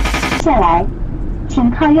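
Rock intro music with sharp drum hits stops abruptly about half a second in. A car's steady low cabin drone of engine and road noise follows, under a satellite-navigation voice prompt, "請靠右行駛" (keep right).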